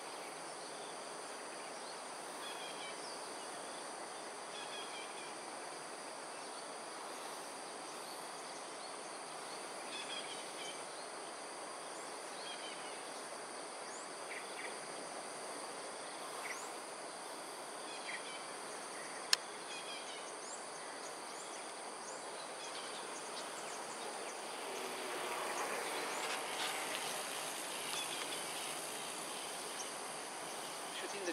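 Steady high-pitched chorus of crickets and other insects over a background hiss, with scattered short chirps and a single sharp click about two-thirds of the way through.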